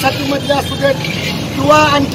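A man speaking Marathi in a street interview, with a steady low rumble of background noise underneath.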